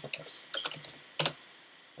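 Keys typed on a computer keyboard: a quick run of clicks in the first second, then one stronger key click a little after a second.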